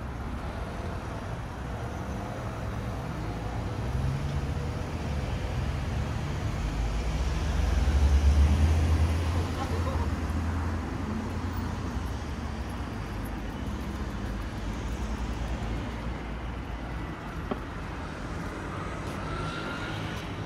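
City street traffic noise at an intersection: a steady wash of passing vehicles, with a low rumble that swells and peaks about eight seconds in.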